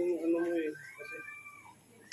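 A long, drawn-out vocal cry held at a steady low pitch, ending about three-quarters of a second in, followed by a fainter, higher cry that rises and falls.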